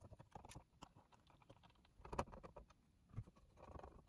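Faint clicks and scrapes of a screwdriver turning a screw into a circuit board's mounting, with a short louder scrape about two seconds in and a few more near the end.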